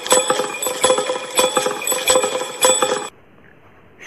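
Metallic bells ringing in a quick, even rhythm, a few strikes a second, cutting off suddenly about three seconds in, leaving faint room tone.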